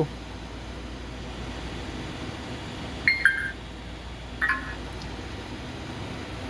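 Short electronic beeps from a FlySky Noble NB4 radio transmitter as its touchscreen is tapped, once about three seconds in and again a second and a half later, over a steady low hum.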